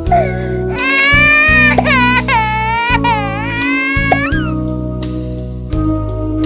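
Background music on an organ-like keyboard, with a high-pitched, wavering crying sound (a comic wail sound effect) laid over it from about a second in until just past four seconds.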